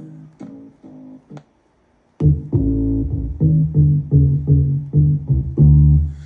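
Bass notes played on the iFretless Bass app. A few soft notes come first, then a brief silence about a second and a half in, then a steady run of louder, deep plucked bass notes, roughly two to three a second.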